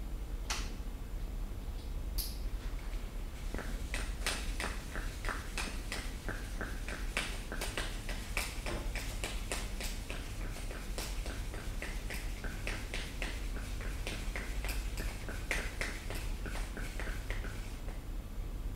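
Shock pump being worked by hand to inflate the air spring of a suspension fork: a long run of short, sharp clicks and hisses from the pump strokes and valve, several a second.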